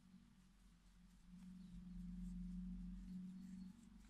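Near silence: room tone with a faint, steady low hum that grows slightly louder from about a second in and drops back near the end.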